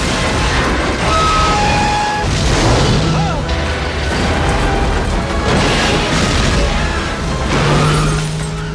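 Action-film sound mix: an orchestral score played over repeated loud booms and crashes from explosions and destruction.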